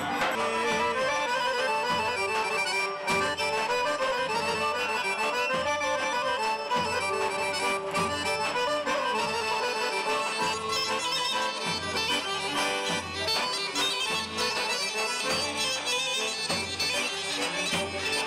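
Live Greek folk dance music: accordion and a bagpipe (gaida) playing the melody over the steady beat of a large double-headed drum.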